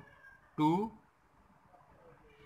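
A man's voice saying one drawn-out word, 'two', with a bending pitch. Otherwise only faint room tone.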